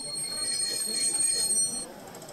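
High-pitched, steady whistle-like tone from the loudspeaker of a brass 1:32 gauge 1 model Prussian T 9.3 steam tank locomotive's sound system, held for nearly two seconds and cutting off sharply.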